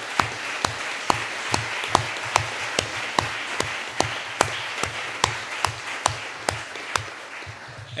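Audience applause, with one pair of hands close to the microphone clapping sharply and evenly about twice a second over the crowd's clapping; it thins out near the end.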